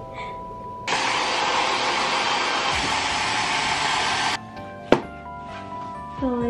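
Hand-held hair dryer blowing for about three and a half seconds, switching on and off abruptly, over soft background music. A single sharp click follows near the end.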